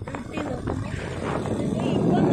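Wind rushing over the microphone of a moving motorcycle, a rough steady roar with the bike's running underneath.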